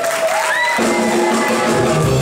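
Live rock band starting a song: a held note slides upward, then the band's low end comes in under it less than a second in.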